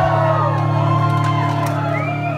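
Concert crowd cheering, whooping and whistling between songs, over a steady low drone from the stage.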